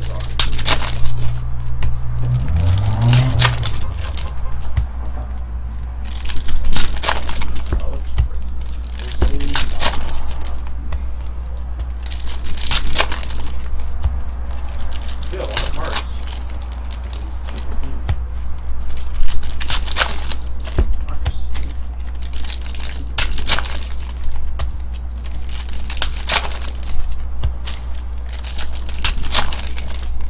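Foil trading-card pack wrappers being torn open and crinkled by hand, with cards handled and shuffled: irregular sharp crackles and rustles over a steady low hum.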